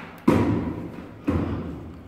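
Two heavy thuds about a second apart, each dying away over half a second: a large suitcase being bumped up onto the stair steps as it is hauled up.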